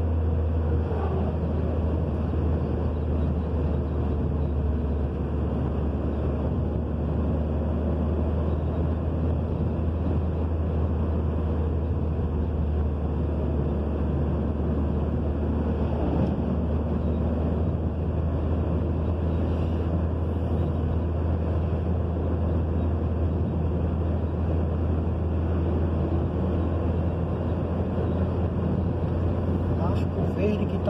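Steady road noise inside a moving car's cabin at highway speed: a constant low rumble of engine and tyres. An oncoming truck goes by in the other lane about sixteen seconds in.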